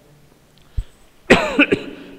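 A man coughing: after a quiet pause, a sudden loud cough a little past halfway.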